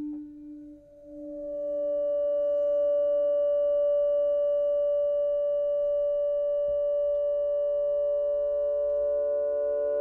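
Sustained electronic synthesizer tones. A low tone fades out within the first second. Then a steady pitched drone with several overtones swells in and holds, and a second, slightly lower tone grows louder beneath it in the second half.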